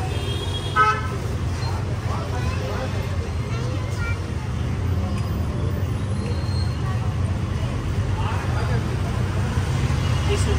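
Street traffic with a steady low rumble, and a vehicle horn sounding once, briefly, about a second in. Faint voices in the background.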